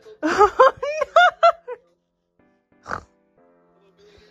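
A cat giving a quick run of about six short meows, each rising and falling, over a second and a half, then a single sharp knock about three seconds in.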